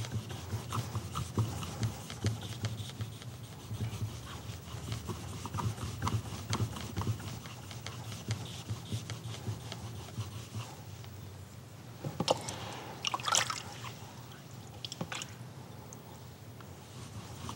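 A knife blade rubbed back and forth flat on a wet 6,000-grit Japanese waterstone, a soft repeated scraping as the secondary edge is polished. A few sharper scrapes and knocks come about three-quarters of the way through.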